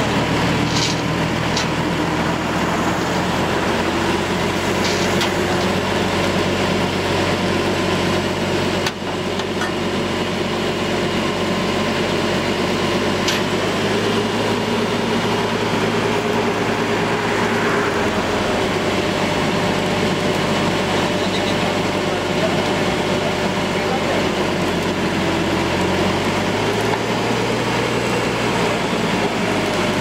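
A truck engine running steadily at idle, with people talking around it.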